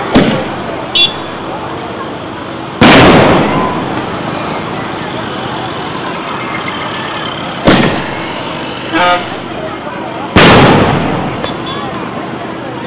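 Fireworks going off overhead: four sharp bangs, the loudest about three seconds in and another near ten seconds, each trailing off in a long echo, over a steady crowd din. Two short high toots sound between the bangs, about a second in and again near nine seconds.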